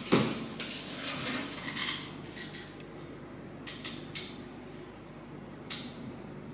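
Clatter of small hard objects being handled: a knock at the start, then a quick run of clicks over about two seconds, and a few more clicks later on.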